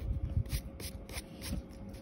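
Pencil sketching on paper: a run of short, quick strokes over the first second or so, then lighter rubbing.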